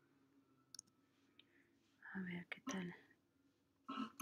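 A person mumbling a few quiet, indistinct words about two seconds in, with a faint double click a little under a second in.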